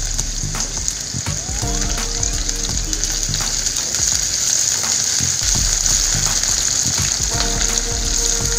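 Diced carrots and green beans sizzling in hot oil in a kadai, with the spatula clicking and scraping against the pan as they are stirred.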